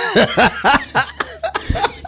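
Men laughing hard in short, rapid bursts.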